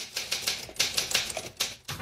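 Manual typewriter typing: a quick, uneven run of key strikes, several a second, that stops just before the end.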